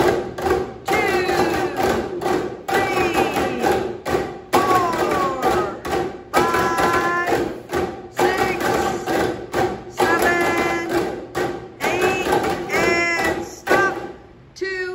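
A group drumming with plastic golf-club tubes on chairs: repeated hollow thumps in a beat, over a steady pitched ring.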